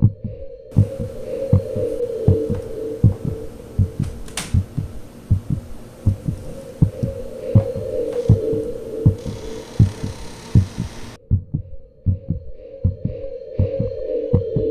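Heartbeat sound effect: regular double thumps over a steady low drone, a horror suspense soundtrack. A single sharp click about four seconds in.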